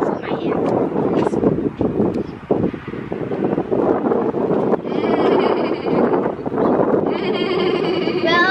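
Children's voices chattering and making high, wavering, bleat-like vocal sounds, strongest in the second half, over a steady low background noise.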